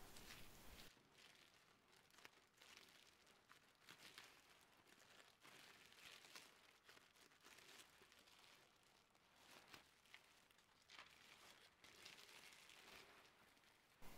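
Near silence, with faint scattered crinkles of plastic cling film being handled.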